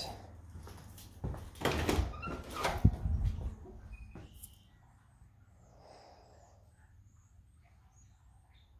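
A door being opened: a cluster of knocks and rattles lasting about two seconds, with one deeper thud in the middle.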